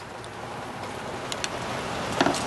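Steady hiss of background noise, with a few faint light clicks about one and a half seconds in as the needle-nose pliers touch the needle and carburetor slide.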